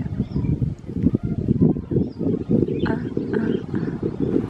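Wind buffeting the microphone outdoors: a loud, choppy low rumble, with a few faint bird chirps above it.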